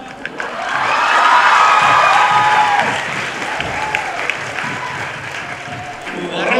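Audience applause that swells about a second in and then tapers off, with a few voices shouting through it.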